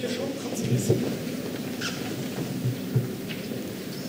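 Low murmur of an audience talking quietly and shifting about in a hall, with a few dull thumps.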